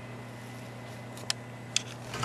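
Steady low electrical hum, with two small sharp clicks about half a second apart in the second half as a small tool is handled.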